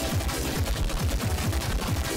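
Heavily distorted, effects-processed electronic music with a rapid train of deep thuds, about four or five a second, each dropping in pitch, under harsh noise.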